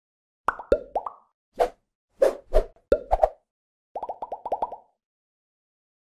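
Cartoon-style pop sound effects: about eight short plops over three seconds, some dropping in pitch, then a quick rapid run of pops about four seconds in.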